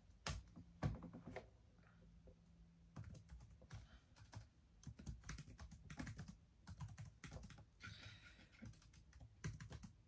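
Typing on a laptop keyboard: faint, quick, irregular keystrokes in runs with brief pauses.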